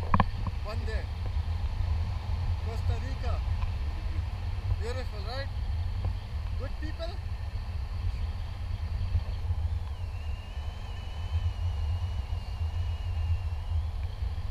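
Wind rushing over an action camera's microphone in paraglider flight, a steady low rumble, with faint voice fragments in the first half. A thin, steady high tone that wavers slightly comes in about ten seconds in and holds for the last few seconds.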